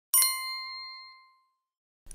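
A single bright 'well done' chime sound effect, struck once and ringing out over about a second and a half, marking a correct answer.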